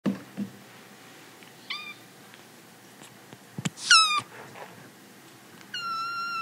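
Kitten meowing three times in short, high calls. The second meow is the loudest and falls slightly in pitch, and the third starts near the end and is held longer. A soft knock comes just before the loudest meow.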